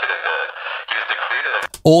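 A man's recorded voice played through the Accusonus Voice Changer's "From The Moon" preset, sounding thin and radio-like with everything below the midrange cut away. It stops abruptly after about a second and a half.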